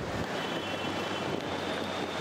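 Steady, even background noise of a busy airport kerbside, traffic and terminal hum on a handheld camera microphone, with a faint high whine from about a third of a second in.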